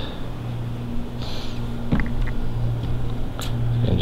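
A steady low hum with a fainter overtone above it, likely from a nearby machine. There is a short hiss about a second in, and a few light clicks.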